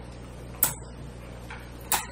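Two sharp ticks, part of a regular series about one a second, over a low steady hum.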